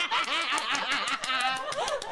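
A woman laughing.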